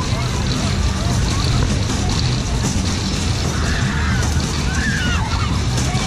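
Maxwell Flying Coaster fairground ride running, with a steady low rumble under a busy mix of voices and fairground music.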